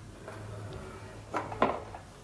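Two faint short clicks about a second and a half in, over a low steady hum: the power button of a 2006 iMac being pressed to switch it on.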